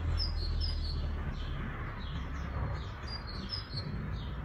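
Small birds chirping in short, high notes that recur every half second or so, over a steady low rumble.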